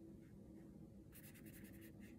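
Faint, quick scratching of a watercolor paintbrush's bristles: a rapid run of about eight short strokes starting about a second in and lasting under a second, over quiet room tone.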